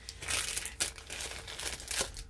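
Plastic packaging of a diamond-painting kit crinkling and rustling in irregular crackles as it is handled and opened.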